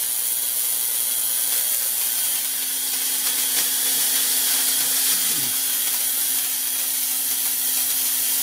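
Lakhovsky multiple wave oscillator running at full power on battery and inverter, its spark gap giving a steady loud hiss over a low steady hum.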